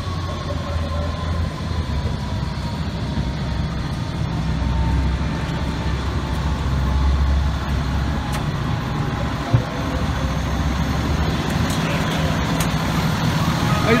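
Diesel engine of a parked FDNY heavy rescue truck idling with a steady low rumble. A faint whine slowly falls in pitch above it, and a single sharp knock comes about nine and a half seconds in.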